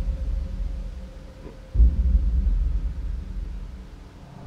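Deep cinematic bass booms from a film trailer's title sequence: one fades away at the start, and another hits suddenly just under two seconds in and slowly dies down.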